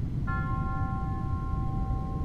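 Low steady rumble of a car driving, heard from inside the cabin, with a sustained eerie synthesizer chord of held tones coming in about a quarter second in.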